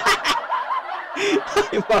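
A man laughing in a run of short bursts.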